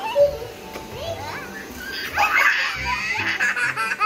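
A toddler laughing: short high-pitched giggles that build into a long, loud burst of laughter from about two seconds in, over background music with a steady beat.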